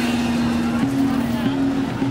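Street-procession music: a steady low held tone that steps back and forth between two close pitches, with people talking over it.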